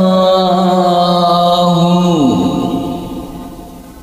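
A man's chanted Quran recitation holding one long note, rich in overtones. A little past halfway it slides steeply down in pitch and fades away.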